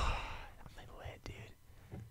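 Soft, breathy laughter without voiced words, loudest at the start and trailing off into near silence, with a couple of faint clicks near the middle.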